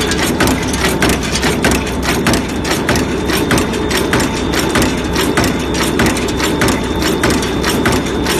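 Bearing roller cold forging machine running at high speed, striking rapid, evenly spaced metal blows, several a second, over a steady mechanical hum.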